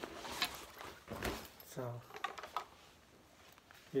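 Rustling of a fabric guitar gig bag as an electric guitar is handled in it, with a dull bump about a second in.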